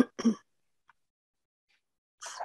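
A person clearing their throat once, a short two-part sound in the first half-second, followed by quiet.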